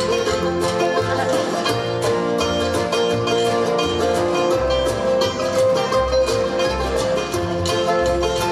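Bluegrass tune played live on acoustic guitar, strummed in a steady rhythm, with a one-string stick-and-box bass thumping a low note on each beat and a washboard keeping time.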